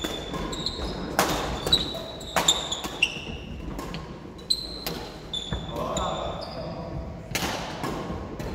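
Badminton doubles rally in an echoing sports hall: rackets hitting the shuttlecock and shoes thudding and squeaking on the wooden court floor in quick, irregular bursts.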